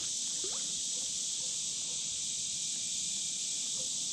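Steady, high-pitched chorus of insects, continuous throughout.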